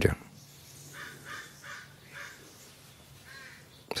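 Faint bird calls: a series of short calls spread over a couple of seconds.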